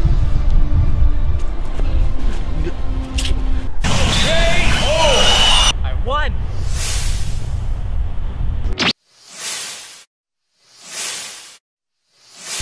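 Wind rumbling on the microphone with faint music under it, then a sudden cut to silence about nine seconds in and two swelling whoosh sound effects about a second and a half apart.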